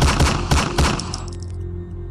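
TV programme title sting: a rapid run of sharp hits in the first second, dying away, over a low steady drone that carries on.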